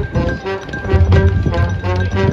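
High school marching band playing, brass and winds over drums and pit percussion.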